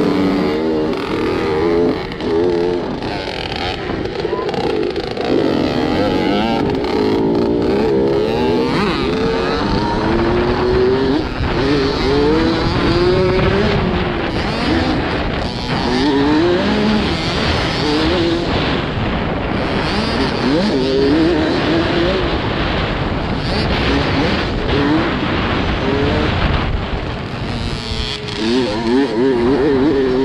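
Youth dirt bike engine revving hard through the gears on a motocross track, heard from the bike itself: its pitch climbs again and again, dropping at each shift, over a steady rush of wind noise.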